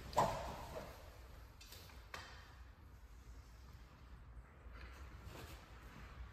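A shuriken thrown by hand: one short, sharp sound just after the start as it is released and strikes, then a few faint knocks in an otherwise quiet room.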